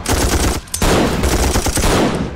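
Rapid automatic gunfire, with a brief break just over half a second in.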